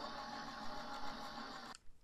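Gemini Junior electric die-cutting machine running, its motorised rollers pressing a cutting-plate sandwich with a wafer die and cardstock through. A steady hum that stops abruptly near the end as the pass finishes.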